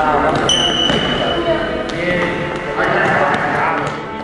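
Futsal practice in a gym: a ball knocking and bouncing on the hard floor a few times, with voices calling out in the hall. About half a second in, a steady high whistle blast sounds for over a second.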